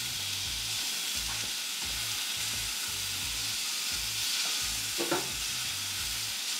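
Steak searing in a stainless steel frying pan, a steady sizzle.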